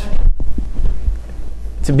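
A loud, low throbbing rumble fills a pause in a man's talk, and his voice comes back near the end.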